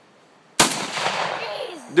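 A single shot from a Benelli Super Vinci 12-gauge semi-automatic shotgun firing a 3.5-inch BB shotshell. A sharp crack comes about half a second in, followed by a long echo that fades over roughly a second.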